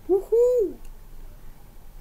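A man's high celebratory "woo-hoo" whoop of two notes: a short rising one, then a longer one that rises and falls, marking the installation reaching 100%.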